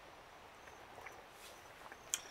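Near silence, with a few faint small ticks.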